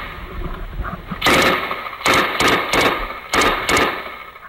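Belt-fed machine gun firing a string of short, loud bursts in quick succession, starting about a second in.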